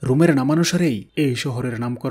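Speech only: a man narrating in Bengali, with a brief pause a little past one second in.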